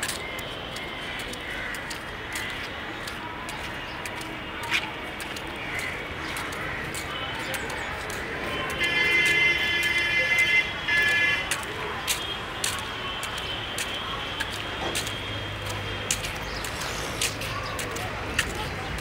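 Street traffic noise with a vehicle horn held for about two and a half seconds, with a short break, around the middle.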